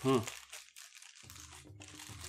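Faint crinkling and rustling of a Funko Mystery Mini blind-box package being turned and felt in the hands.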